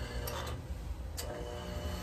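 A steady low mechanical hum with a couple of faint clicks.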